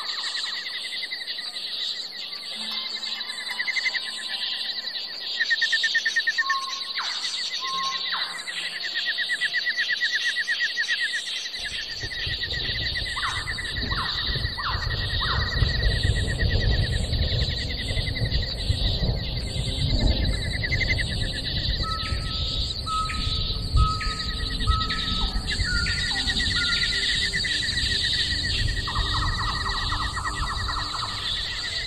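Birds chirping and trilling over a steady high-pitched drone, with short whistled notes now and then. A low rushing noise comes in about twelve seconds in.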